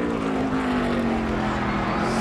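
NASCAR stock car's V8 engine, heard as the car passes, its pitch falling steadily as the revs wind down under hard braking from about 130 mph into a corner.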